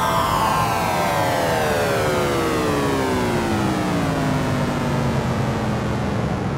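Electronic house track with the beat dropped out: a sustained synth chord slides steadily down in pitch over about four seconds, then holds low, over a wash of noise.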